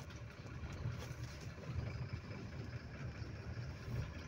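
Steady low rumble of engine and road noise heard from inside the cab of a moving vehicle.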